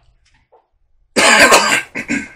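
A man coughing: one loud, harsh cough starting about a second in, with another beginning right at the end.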